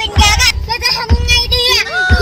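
Background music with a high, wavering sung voice over a steady beat of low thumps about once a second.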